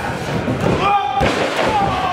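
A single heavy thud on the wrestling ring about a second in, among shouting voices.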